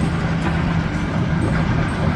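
Steady low engine drone over a background rumble, with no distinct strikes or breaks.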